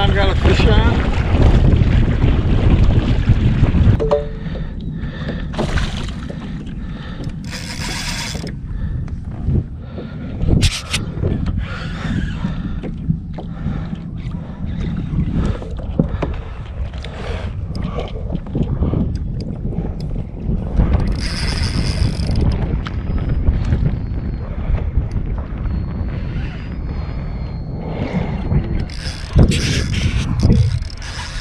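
Wind buffeting the microphone for about the first four seconds, then a quieter mix of water against a plastic sit-on-top kayak and scattered clicks and knocks as a spinning reel is worked while a redfish is being fought.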